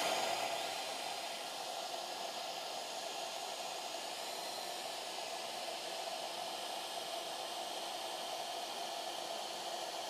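Shaper Origin handheld CNC router's spindle running steadily at speed setting 4, an even machine whir.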